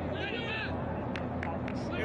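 Pitch-side sound of a football match in play: a player's shout early on, then a few sharp thuds of the ball being kicked over a steady background hiss.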